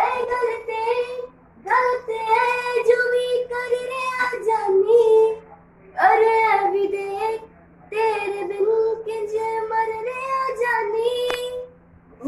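A young woman singing a Hindi song solo without accompaniment, in four long held phrases with short pauses for breath between them.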